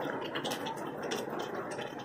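Light steady rain falling, an even hiss with scattered short ticks of individual drops.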